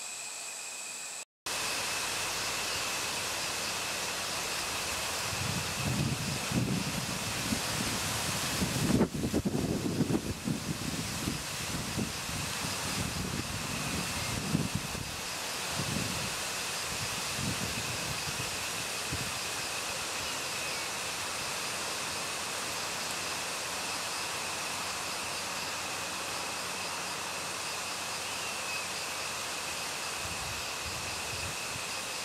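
Outdoor ambience: a steady hiss with a thin, steady high-pitched tone running through it. Irregular low rumbling gusts of wind on the microphone come from about six to sixteen seconds in, loudest around nine or ten seconds.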